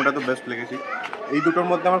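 People talking, a child's high voice among them.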